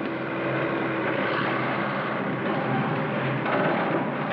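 Steady engine noise of heavy machinery running on a construction site.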